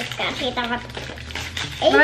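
Quiet, murmured speech from a woman's voice, with a louder word starting near the end.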